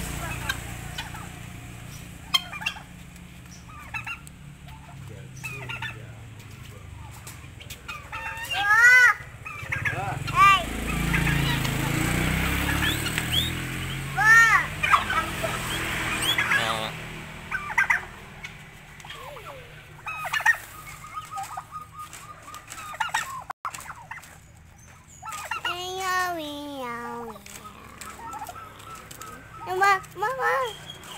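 Domestic turkeys and guinea fowl calling: a few short arched calls in the middle, then one long warbling gobble falling in pitch near the end.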